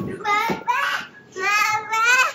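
A young child calling "Mama" in a high, sing-song voice: two drawn-out calls, the second running to the end.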